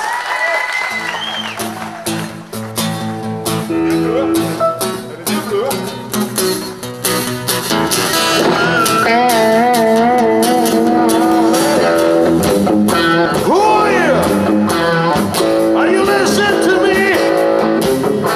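Live country-folk band playing: acoustic guitar, electric guitar and drums. It is quieter for the first few seconds and reaches full volume about eight seconds in.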